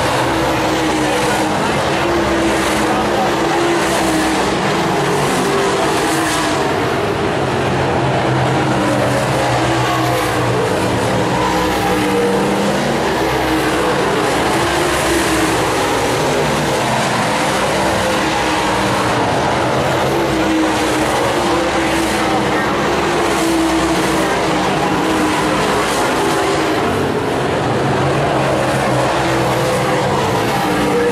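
A pack of super late model dirt-track race cars running at racing speed, their V8 engines loud and continuous, with the engine notes rising and falling as the cars go through the turns and pass by.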